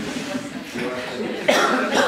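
A single loud cough about one and a half seconds in, over low talk in the room.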